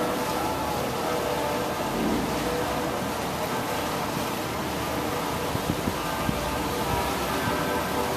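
Steady drone of a river tour boat underway, its engine running evenly under a wash of noise.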